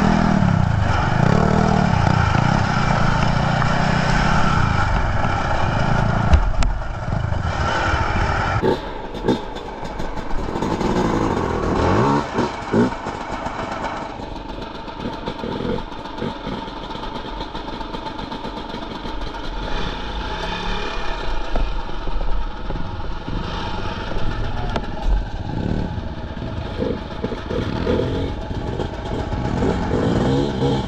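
Enduro motorcycle engine revving, its pitch rising and falling as it is ridden over rocks. About eight seconds in it drops back, with knocks and a few quick throttle blips, then settles to a lower idle with occasional short revs.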